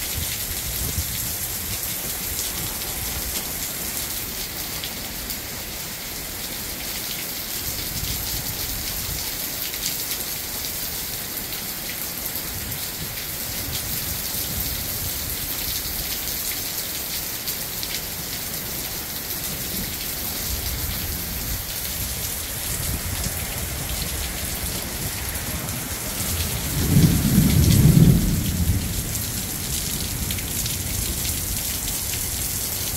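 Heavy thunderstorm rain falling steadily. Near the end a low rumble of thunder swells for about two seconds and is the loudest sound.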